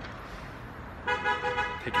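A car horn sounds once, a steady tone lasting just under a second, starting about a second in over the hiss of street traffic.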